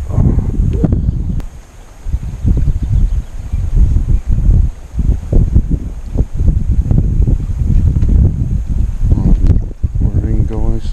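Wind buffeting the microphone: an uneven low rumble that rises and falls in gusts, with a brief lull about a second and a half in.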